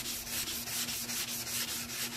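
A medium nail emery board rubbed by hand in quick back-and-forth strokes across an oxidized plastic headlight lens, scratching through a very heavy haze.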